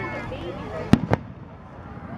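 Two sharp bangs of aerial firework shells bursting, about a fifth of a second apart, about a second in.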